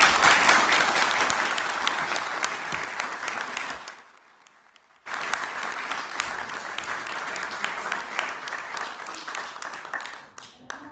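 Audience applause in a hall, heard over video-call audio. The clapping cuts out abruptly for about a second near the middle, then starts again.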